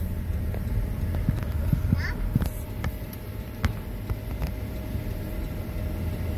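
Steady low road and engine rumble inside a moving car's cabin, with scattered light clicks and knocks.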